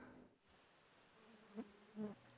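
Near silence, with a faint steady low buzz in the second half.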